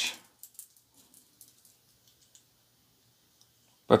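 A handful of faint, light metallic clicks, mostly in the first half, from two steel wristwatches being turned in the hands, one hanging on a stainless steel link bracelet.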